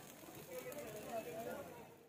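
Faint voices talking in the background.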